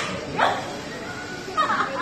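A person's wordless vocal sounds: a short exclamation about half a second in, then a high, gliding cry near the end.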